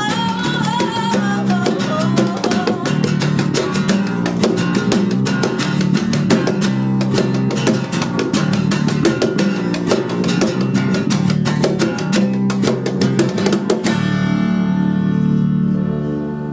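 Acoustic guitars strummed rapidly in a live acoustic rock performance, with a sung line trailing off in the first second. About fourteen seconds in the strumming stops and the song ends on a final chord left ringing.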